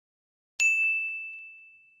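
A single bright ding, about half a second in, ringing out and fading over about a second and a half: the chime sound effect of an animated subscribe button and notification bell.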